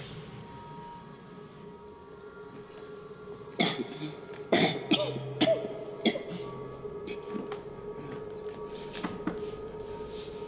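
A man coughing and gasping harshly in a cluster of fits, with a few more near the end, over a steady, low musical drone.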